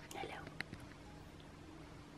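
A brief, soft whispered voice in the first half second, then a small click, over a faint steady hum.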